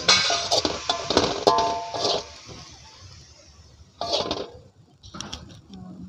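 Metal spatula clinking and scraping against a wok as stir-fried cassava leaves are scooped into a bowl, a dense run of clinks in the first two seconds over a fading sizzle, then a few lighter taps.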